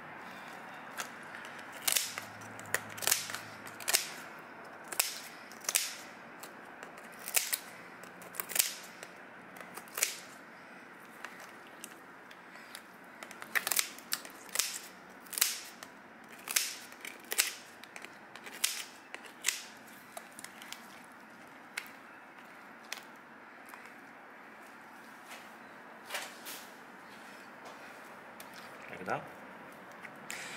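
Kitchen shears snipping through a giant isopod's hard shell and legs: a long series of sharp, irregular snaps and cracks, coming most thickly in the middle.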